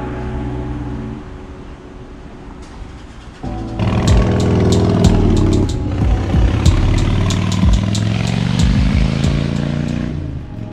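A vehicle engine running with background music over it; the sound gets much louder about three and a half seconds in.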